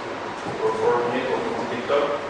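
A person's voice talking indistinctly in a lecture hall, too unclear for the words to be made out.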